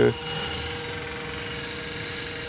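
A steady mechanical hum with a faint constant tone through it, from an unseen running machine.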